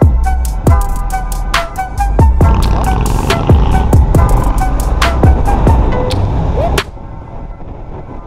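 Background music with a steady beat of deep kick drums and crisp hi-hat ticks; it falls to a much quieter passage about seven seconds in.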